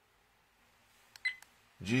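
A dash cam's menu button is pressed once, about a second in. It gives a few light clicks and a short high beep, the camera's key-press tone as the settings menu steps to the next entry.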